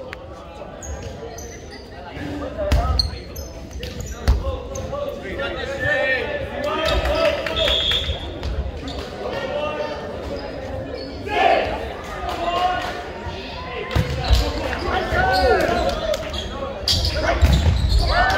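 Volleyball thumping a few times on the hardwood court and off players' hands, over players' chatter echoing in a large gym. Sneakers squeak on the floor near the end as a rally gets going.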